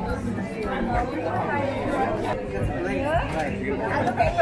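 Crowd chatter: several people talking at once close by, no one voice clear.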